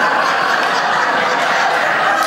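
Comedy-club audience applauding steadily, with laughter mixed in.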